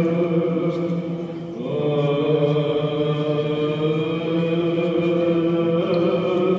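Greek Orthodox Byzantine chant: voices singing long held notes in a reverberant church, dipping briefly and then moving up to a higher note about a second and a half in.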